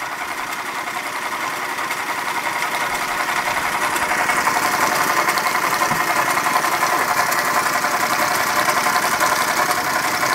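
Linemar Atomic Reactor toy steam engine running under steam: a fast, even mechanical chatter from the small engine and its flywheel drive, running smoothly. It grows louder over the first few seconds, then holds steady.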